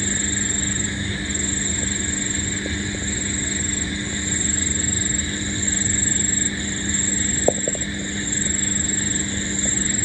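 Chorus of night insects: a high trill in stretches of about a second with short breaks, over a low steady hum. One short knock about seven and a half seconds in.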